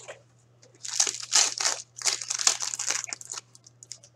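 Foil hockey card pack wrapper crinkling and tearing as it is ripped open, in two stretches of about a second each.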